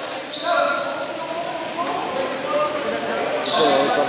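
Indoor basketball game: sneakers squeaking on the court, with players calling out, echoing in a large gym hall.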